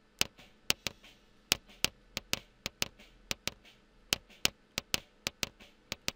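A recorded kick-drum trigger track played back: a string of sharp, dry clicks and ticks with no drum tone, spaced unevenly in the drummer's kick pattern and often in quick pairs. Each click marks one kick hit, the raw trigger signal that is to be turned into MIDI and replaced with a sampled kick.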